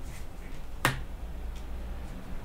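A single sharp snap a little under a second in, as a tarot card is laid down onto the card-covered table, over a low steady hum.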